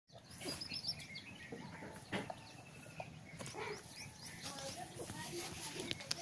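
Farmyard ambience: small birds chirping, with a quick run of high chirps near the start, faint voices, and a few soft knocks.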